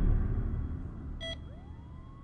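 Film-trailer sound design: a deep boom dying away, a short electronic beep about a second in, and a thin tone that rises near the end and then holds steady.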